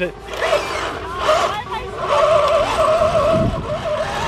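Small electric motors of an SG 1203 1/12-scale RC drift tank whining as it climbs a steep dirt slope; the pitch wavers up and down with the throttle. Wind buffets the microphone with a low rumble.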